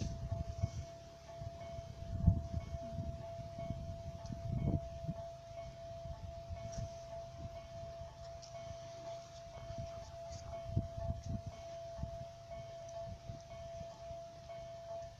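Wind buffeting the microphone in irregular low gusts, with a steady faint high tone and soft ticks about once a second.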